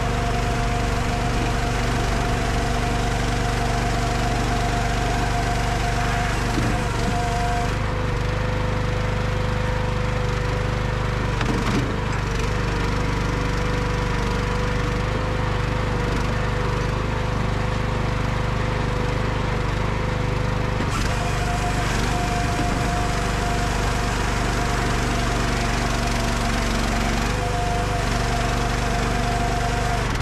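Engine of a Bossworth firewood processor running steadily at a constant loud level while its chainsaw bar cuts a log. The engine note sits lower from about 8 to 21 seconds in, as the saw is loaded in the wood, then rises back.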